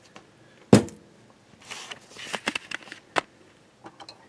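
A large electrolytic capacitor is set down on the workbench with one sharp knock about a second in. Then come light clattering and rustling as plastic case parts and components are handled, and a click near the end.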